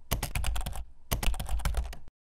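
Rapid keyboard typing clicks, a sound effect for on-screen text being typed out, in two quick runs with a brief pause about a second in.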